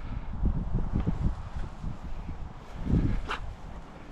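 Wind buffeting the microphone outdoors, with rustling of long grass and vegetation, and a brief louder swell about three seconds in.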